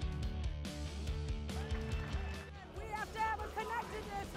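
Music with a heavy bass beat that drops away about halfway through, followed near the end by a voice speaking.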